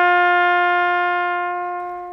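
A trumpet call played by a soldier, one long held note that slowly gets quieter.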